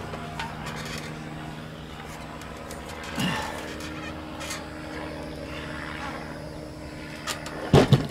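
A steady low hum throughout, and just before the end a sharp knock as the tipped-up pressure washer is set back down on its wheels.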